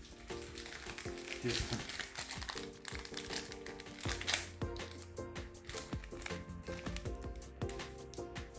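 Background music with a plastic packet of baker's ammonia crinkling as it is handled, in short irregular rustles.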